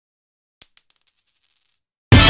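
A small ringing metal object dropped on a hard surface: one bright clink about half a second in, then a run of quicker, fainter bounces that settle and stop within about a second.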